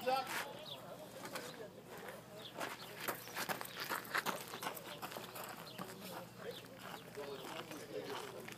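Indistinct background talk from several people, with scattered short clicks and knocks.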